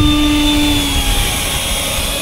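70mm electric ducted fan of an RC jet running while the plane taxis on the ground: a steady whine with a lower hum under it. The hum fades about halfway through and the whine eases slightly lower near the end.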